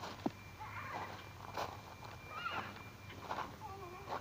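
A young child's faint, high-pitched squeals and wordless vocal sounds, a few short rising and falling cries, with a sharp click near the start.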